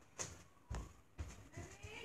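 A few faint knocks, then a faint wavering voice-like sound near the end, from someone off-camera.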